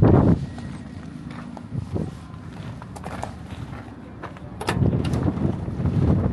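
Footsteps on gravel, with a few sharp metallic clicks about three seconds in and just before five seconds as the cab door of a Mack RD dump truck is unlatched and swung open.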